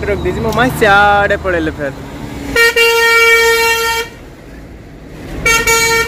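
Truck horn sounding two blasts of one steady pitch: a long one of about a second and a half, then a shorter one near the end. A low engine rumble runs under the first two seconds.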